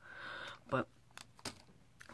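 Mostly a person's voice: a breathy hiss, then a single spoken word, followed by about three sharp clicks a little over a second in.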